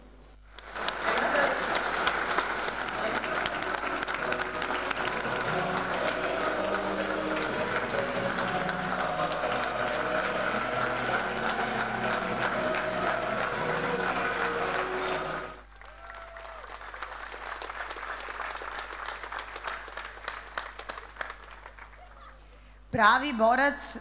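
A large crowd in a hall applauding, with music playing under the clapping. The loud applause cuts off abruptly about fifteen seconds in, leaving quieter music with a slow, steady low beat and scattered claps until a woman starts speaking near the end.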